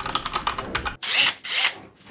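Rapid typing on a computer keyboard, a quick run of clicks for about the first second. Then two short bursts of a cordless drill running, each under half a second.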